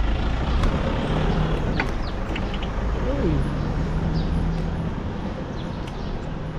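Wind buffeting the microphone of a camera on a moving bicycle, a steady rushing rumble mixed with street noise.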